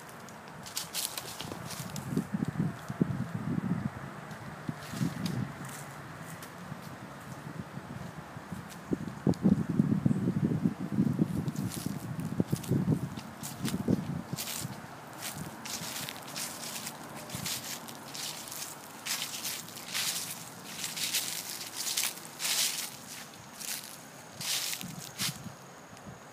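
Footsteps crunching and rustling through dry fallen leaves and mulch at a walking pace, the crunches closest together in the second half.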